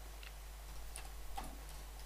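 A few faint, scattered keystrokes on a computer keyboard as a misspelled word is corrected and retyped.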